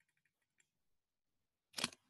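A few faint ticks, then one sharp, loud click or knock near the end, typical of handling a computer mouse or the earbud microphone.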